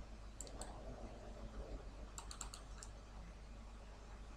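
Faint clicks from a computer's mouse and keys: two about half a second in, then a quick run of four or five a little after two seconds, over a steady low hum.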